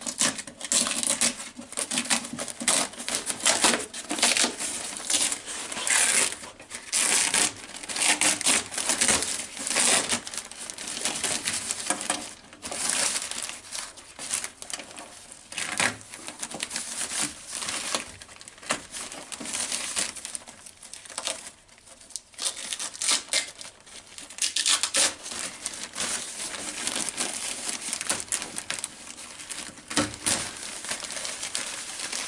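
Plastic moisture-barrier sheet crackling and rustling as it is peeled by hand off the inner metal of a Mercedes-Benz W116 door, in uneven spurts of irregular crackles.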